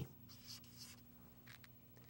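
Faint strokes of a felt-tip marker writing a plus sign and a 3, in a few short scratches about half a second in and again around a second and a half.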